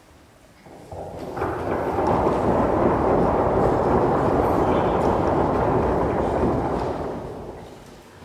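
Audience applause that swells in over the first two seconds, holds steady, and dies away near the end.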